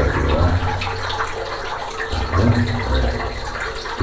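Water trickling along the floor of a narrow rock tunnel, over a steady low rumble.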